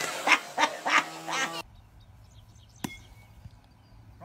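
A small child's short, repeated high-pitched vocal sounds. Then a quiet outdoor background and a single sharp crack nearly three seconds in, as a bat strikes a ball off a batting tee.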